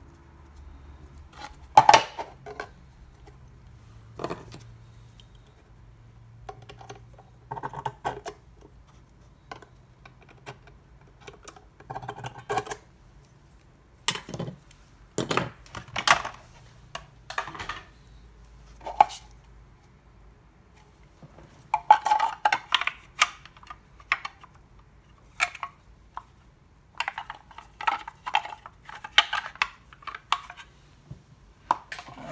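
Irregular clacks, knocks and clicks of a hard plastic project-box enclosure and metal hand tools being picked up, set down and handled on a cutting mat, with busier clattering about two-thirds of the way through and again near the end.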